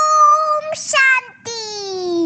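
A high, child-like singing voice holds a long steady note. After a short break it starts a lower note that slides slowly downward.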